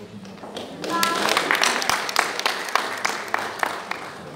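Audience applauding: scattered claps building about a second in into steady clapping that fades near the end.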